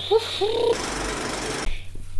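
A woman laughing: a few short rising laughs, then a breathy, rapidly pulsing laugh about a second long that stops shortly before the end.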